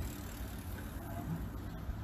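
A pause in a man's speech, leaving a steady low background rumble.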